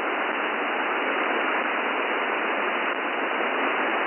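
Steady hiss of 40 m band noise from a NetSDR receiver in lower sideband mode. The sound is held to the 200–3000 Hz receive filter, and no station is transmitting.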